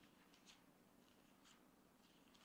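Near silence with faint paper rustles of Bible pages being turned by hand, twice, over a faint steady low hum.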